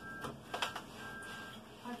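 Dusting a wall shelf with a cloth: a few soft knocks and rustles as a plush cushion is lifted off and the shelf is wiped. Faint short electronic beeps sound behind, the last held for about half a second.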